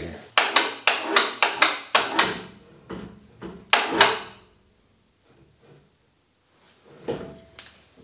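Metal clanks and knocks as a reel mower's cutting unit is set onto a reel grinding machine and clamped in place: a quick series of sharp knocks in the first two seconds, then two more about four seconds in.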